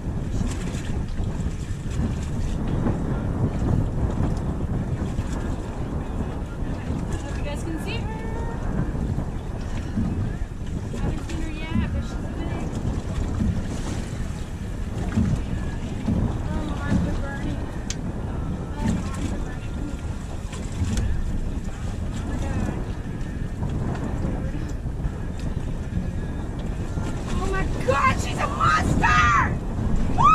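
Steady wind buffeting the microphone over open water, with water washing against the boat's hull. Near the end a voice cries out.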